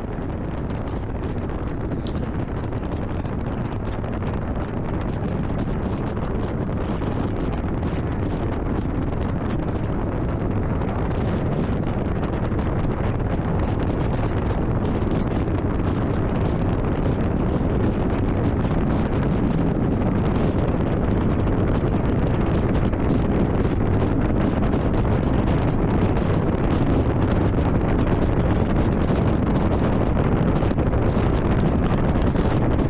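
Wind rushing over the microphone of a camera on a moving Yamaha V Star 1300 cruiser, with the motorcycle's V-twin engine and road noise running underneath. The rush grows gradually louder.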